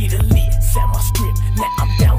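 1990s hip hop track: a deep, sustained bass line under repeated kick drums that drop in pitch, with a high held synth note, the bass cutting out briefly near the end.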